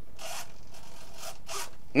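Small RC hobby servo whirring a few brief times as it drives a model airplane's elevator, following the transmitter stick.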